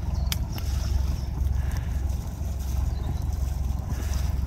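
Perkins diesel engine of an old canal cruiser idling steadily with a low, even rumble, running sweetly after years unused. One sharp click comes about a third of a second in.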